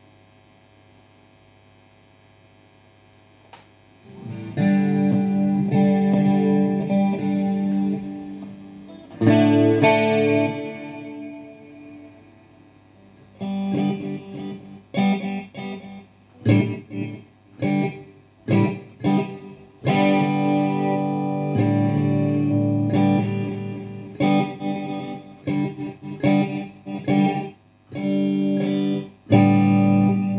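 Electric guitar played through a Marshall rack rig (JMP-1 preamp, 9100 power amp, 4x12 cabinets) on a distorted, effects-laden tone. The amp hums quietly at first. About four seconds in, sustained chords ring out, and from about halfway through come choppy, stop-start chords.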